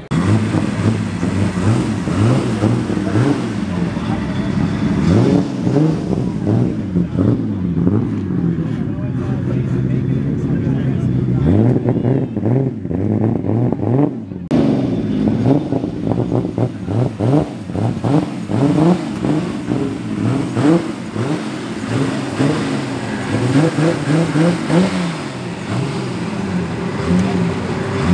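A car engine running and revved again and again, its pitch rising and falling, with people talking around it.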